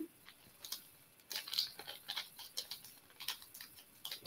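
Faint, irregular small clicks and handling noises from fingers working tiger tail beading wire and a small metal calotte bead tip, starting about a second in.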